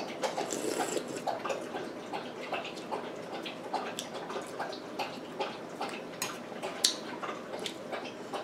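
Close-up eating sounds of a person taking spoonfuls of creamy fish chowder: irregular wet mouth clicks, smacks and slurps, with the metal spoon in the bowl.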